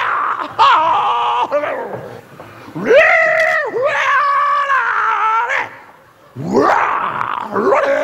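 A man imitating a dog with several long, pitched vocal cries; the last one rises in pitch near the end.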